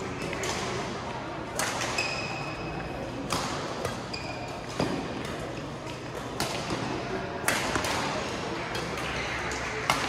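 Badminton rally: rackets striking the shuttlecock in sharp cracks about every one to one and a half seconds, with a couple of short high shoe squeaks on the court mat. Murmur of voices from the hall runs underneath.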